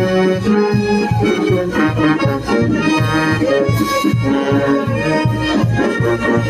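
Live brass band playing dance music, sousaphones keeping a steady bass beat under the horns.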